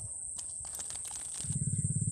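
Insects trilling in a steady, high-pitched drone, with a few light rustles and clicks near the middle. About one and a half seconds in, a louder, low, rapidly pulsing drone starts.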